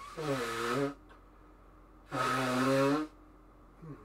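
Two wordless groans from a man's voice, each just under a second long and held at a steady low pitch, about two seconds apart.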